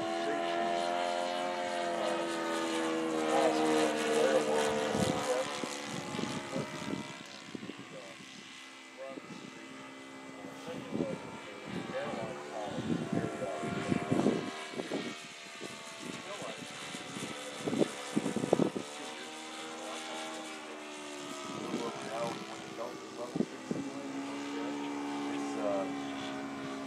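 Radio-controlled P-51 Mustang model's OS 95 engine running in flight, its pitch bending up and down as the plane passes. The engine fades about a third of the way in, with a run of short thumps in the middle, and comes back steadier and lower near the end.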